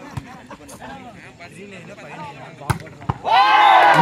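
A volleyball being struck during a rally: a sharp slap of hands on the ball just after the start, then two louder slaps about half a second apart near the three-second mark. Loud shouting breaks out right after the last hit.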